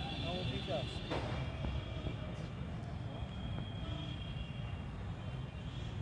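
Steady low rumble of outdoor background noise, with faint talking in the first second and a faint steady high hum.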